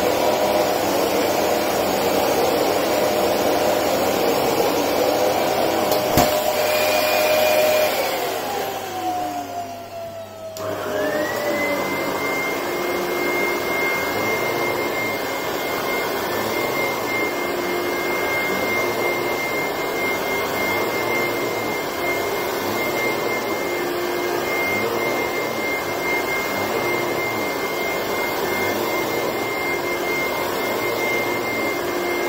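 Dyson ball upright vacuum cleaner running, switched off with a click about six seconds in, its motor winding down in falling pitch. About ten seconds in, a very old AEG upright vacuum cleaner is switched on, its motor spinning up quickly to a steady high whine and running on to the end.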